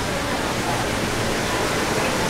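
Steady rushing noise with no distinct events, of the kind heard as outdoor background noise on the microphone.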